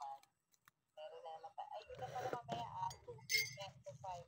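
Faint, low conversational talk that starts about a second in, after a moment of near silence.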